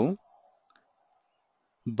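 A man's speech trails off, then two very faint clicks come in the pause over a low steady hum before his speech resumes near the end.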